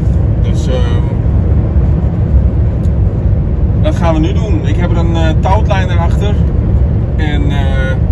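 Steady low drone of a DAF truck's engine and tyres heard inside the cab while driving at highway speed. A man's voice talks over it in short stretches, near the start, in the middle and near the end.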